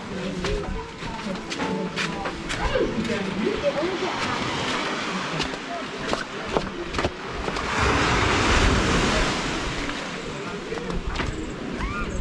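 Faint background voices of other people, with a few clicks, then waves washing on a sandy beach. The surf swells to a broad hiss about eight seconds in and fades again.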